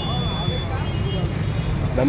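Steady low rumble of outdoor background noise, with faint voices and a brief thin high tone near the start.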